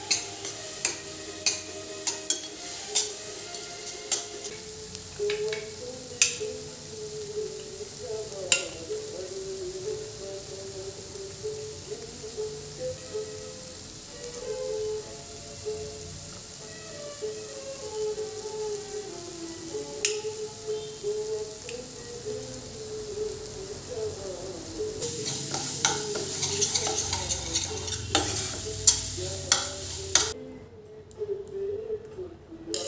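A steel spoon stirring and clinking against a stainless steel pan of frying onion masala, with sharp taps in the first several seconds and a sizzle that grows louder over the last five seconds. A soft instrumental melody plays underneath throughout.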